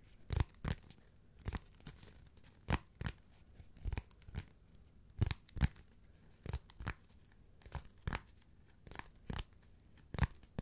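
Fingernails scratching at a corrugated cardboard box in short, irregular strokes, about one or two a second, often in quick pairs.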